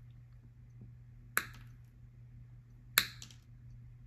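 Pliers' cutting jaws snipping through small insulated conductor wires, trimming them flush with a connector's contact carrier: two sharp snips about a second and a half apart.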